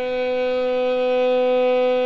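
Violin playing one long, steady bowed note, B below middle C (about 250 Hz), as one step of a slow G major scale.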